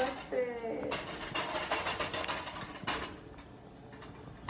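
A brief indistinct voice in the first second, then low room noise in a small kitchen with a few light knocks.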